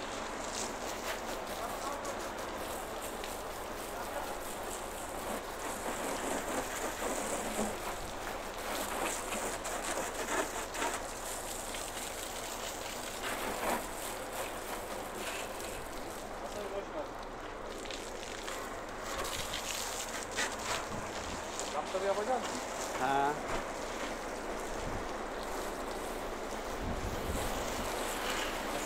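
Steady hiss and spatter of a hose's water jet spraying against a truck's cab and bumper.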